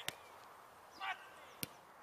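A football kicked hard, a sharp smack just after the start, then a second sharp impact of the ball about a second and a half in. Short shouts from players come just before each impact.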